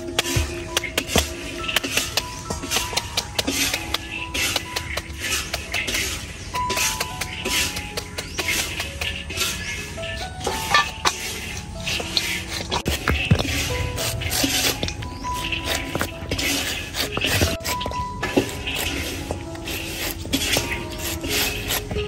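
Background music with a simple held melody over a steady, light percussive beat.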